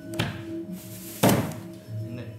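Two thunks about a second apart, the second louder, over background music with sustained low notes.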